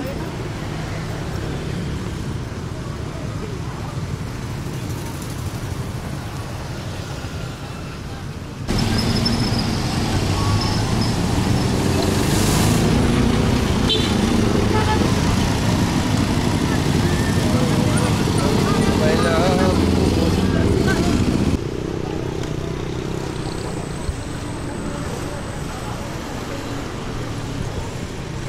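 Busy street traffic with people's voices around: vehicles and motorcycles running past. A much louder low rumble sets in suddenly about a third of the way in and cuts off about three quarters through.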